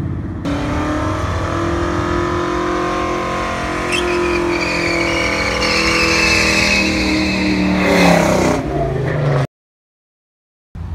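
Ford Mustang's engine held at high revs during a burnout, with the rear tyres squealing through the middle of it. The revs drop near the end and the sound cuts off abruptly.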